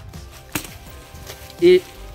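A single sharp knock about half a second in, as a jerk on the rope knocks the grappling hook loose from its hold.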